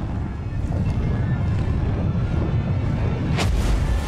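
Cinematic logo-sting sound design: a dense low rumble building under music, then a sharp whoosh-hit with a deep boom about three and a half seconds in.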